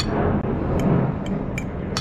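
Steady low rumble with four light clicks, the tapping of a metal fork against a ceramic plate of food.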